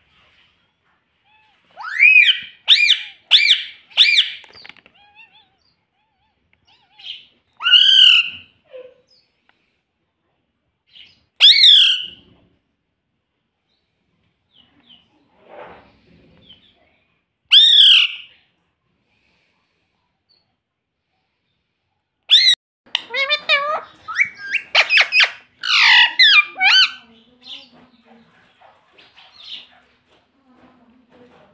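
Indian ringneck parakeet calling with sharp, high squawks: a quick run of four near the start, three single squawks spaced several seconds apart, then a stretch of rapid chattering near the end.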